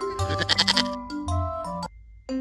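Goat bleating: one quavering bleat in the first second, over light children's background music that cuts off just before the end.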